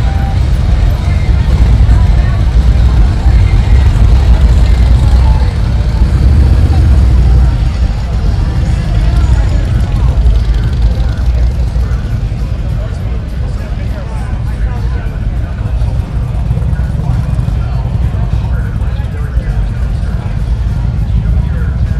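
Harley-Davidson touring motorcycles rumbling past at low speed, the deep engine note loudest in the first several seconds and then easing off, with crowd voices mixed in.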